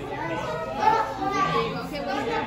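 Indistinct chatter of young children's and adults' voices talking over one another.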